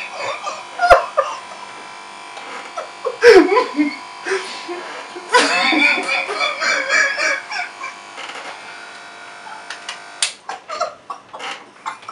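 Electric hair clippers buzzing steadily while being run over a man's head, with his loud bursts of laughter over the buzz.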